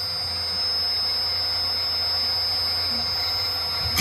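Milo v1.5 mini CNC mill's spindle running free with a steady high whine, the end mill lifted clear of the workpiece between cuts. Right at the end the cutter bites back into the block and the cutting noise jumps up.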